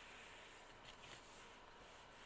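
Near silence: room tone with faint rubbing of paper as it is folded and pressed down over the edge of a notebook cover.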